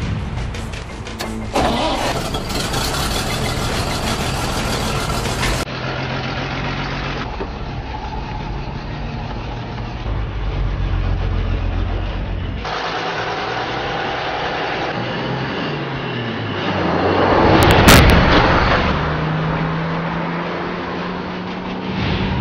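A truck engine running, its pitch shifting as it drives, with a loud crash of noise about eighteen seconds in, the loudest moment: a truck hitting a cyclist.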